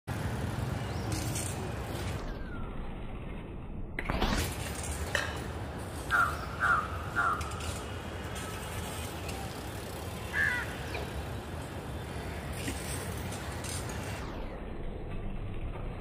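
Street ambience with a steady low traffic rumble. A rushing swell comes about four seconds in, then three short high-pitched chirps around six to seven seconds in and one more a little after ten seconds.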